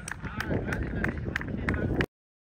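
People's voices talking outdoors, with footsteps on grass and wind rumble on the microphone.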